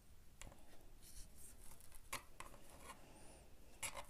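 Faint scratchy rubbing and a few soft ticks of a small metal crochet hook and thin thread as hands work a double crochet stitch, the thread being wrapped and pulled through the loops.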